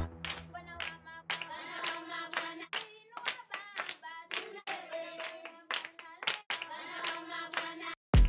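Children's choir chanting with hand claps, from a Maasai tribal-texture sample pack at 112 BPM. Several short sample loops play one after another, with brief breaks between them.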